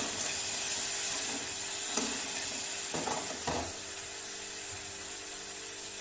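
Potato and broccoli frying in an aluminium kadhai on a gas burner, a steady sizzle, with a spatula scraping and stirring through the pan a few times in the first few seconds.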